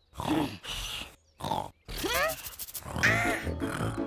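Cartoon bunny character grunting and straining in short vocal bursts over children's cartoon music, with a quick run of rising whistle-like glides about halfway through.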